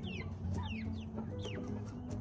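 Chickens peeping: repeated short, high-pitched calls that each fall in pitch, several in two seconds.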